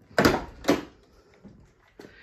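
Two clunks about half a second apart, the first the louder, as a Pontiac Firebird T-top roof panel is unlatched and handled for removal.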